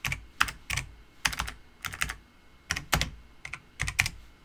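Typing on a computer keyboard: irregular keystrokes, some in quick runs of two or three.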